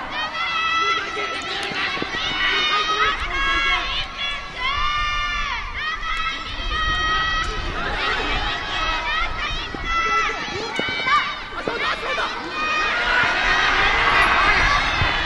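Sideline crowd of lacrosse teammates shouting encouragement, many high-pitched voices overlapping, with one long drawn-out call about five seconds in.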